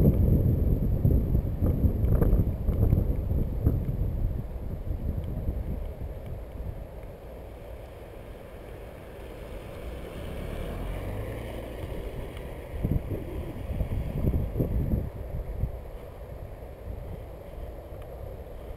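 Wind rumbling on the microphone of a camera on a moving bicycle, loudest in the first few seconds and then easing off. About ten seconds in, a car passes slowly, its engine and tyres faint on the wet path.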